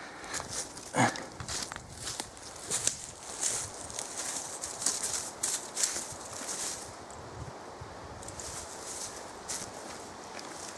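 Footsteps crunching and rustling through dry leaf litter, a run of irregular crackles that thins out and goes quieter about seven seconds in.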